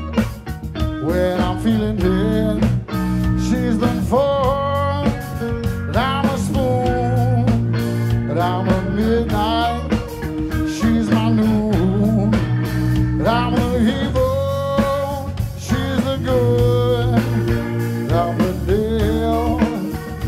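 Electric blues trio playing live: an electric guitar lead line with bent, wavering notes over bass guitar and drums.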